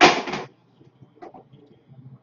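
A short scraping rustle of about half a second as cardboard trading-card boxes and cards are handled on the table.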